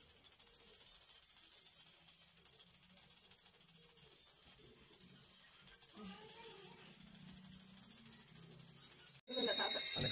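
Brass pooja hand bell ringing in a high, steady ring, with faint voices underneath; it cuts off abruptly near the end.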